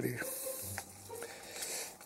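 Hand screwdriver turning a small screw into a model kit's frame: a faint, scratchy rasp as the screw is driven in.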